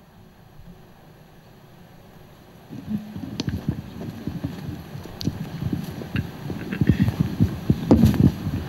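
Quiet room tone, then from about three seconds in a microphone picking up handling noise: low thumps and rumbling that grow busier, with a few faint clicks.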